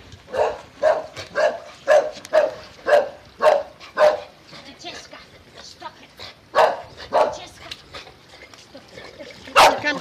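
A small dog yapping over and over, about two yaps a second for the first four seconds, then a few scattered yaps.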